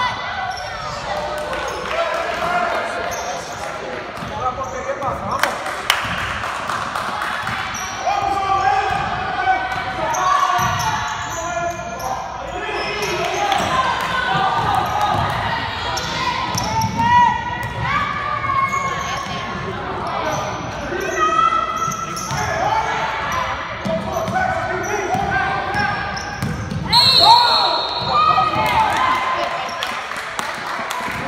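Basketball being dribbled on a hardwood gym floor amid players' and spectators' voices echoing in the hall, with a short, high whistle blast about three seconds before the end.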